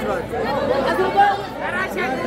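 Several people talking and calling out at once close to the microphone, their voices overlapping: sideline spectators' chatter during a football match.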